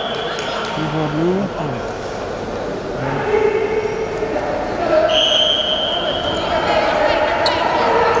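A referee's whistle is blown once, a steady shrill tone lasting about a second, about five seconds in. At 10–0 it ends the wrestling bout on technical superiority. Shouted voices and the echo of a large sports hall run under it.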